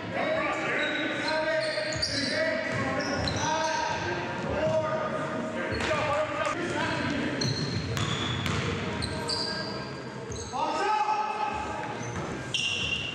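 Game sound in a gymnasium: a basketball bouncing on the hardwood court, short high squeaks of sneakers, and players' voices calling out through the hall.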